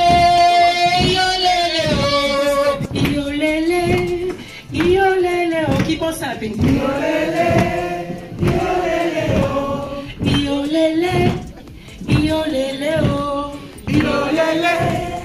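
A group of men and women singing together, led by a woman singing into a microphone, with a steady beat about twice a second.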